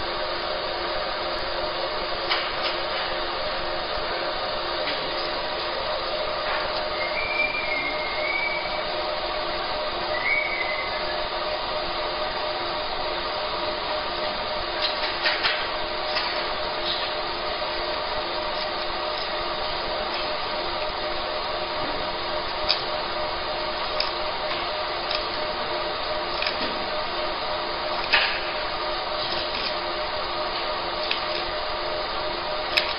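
Fiber laser marking machine running as it marks colour onto a stainless steel plate: a steady machine hum with several fixed tones, broken by occasional sharp ticks.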